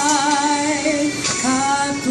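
A woman singing a long held note with vibrato, breaking off about halfway through and moving to a new, steadier note.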